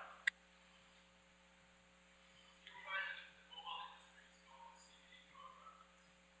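A faint, distant voice, mostly unintelligible, asking a question from the audience away from the microphone, in short broken phrases over a steady low hum. A single brief click comes just after the start.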